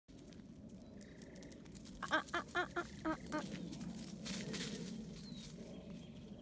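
A quick run of six short pitched vocal calls about two seconds in, over a faint outdoor background with a few faint bird chirps.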